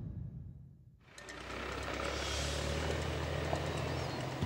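After a fade to near silence, a steady low engine hum comes in about a second in and runs on evenly.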